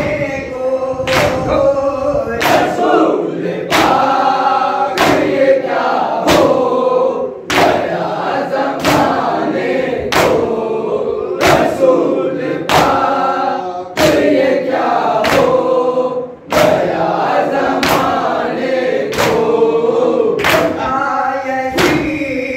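A group of male voices chanting a noha, the Shia lament, in unison, with a loud unison hand-on-chest matam strike about every 1.2 seconds keeping the beat.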